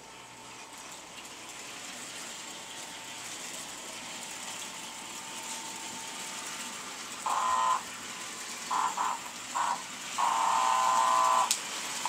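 American Flyer Silver Rocket toy Alco diesel train running on its track, its motors and wheels giving a steady whir that slowly grows louder as it comes nearer. About seven seconds in, the remote-controlled horn in the dummy A-unit sounds a series of short blasts, ending in one long blast of over a second.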